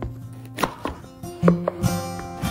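Chef's knife cutting a red bell pepper in half on a wooden cutting board: a few sharp knocks of the blade against the board, the loudest near the end, over background guitar music.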